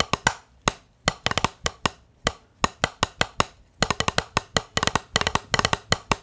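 Drumsticks playing a snare-drum pattern on a drum practice pad: quick, dry taps, loud accents mixed with quieter strokes, broken by brief pauses.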